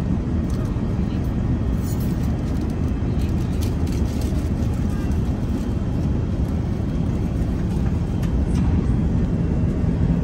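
Steady low rumble of an Airbus A380's cabin noise, with the faint murmur of passenger voices and a few light clicks.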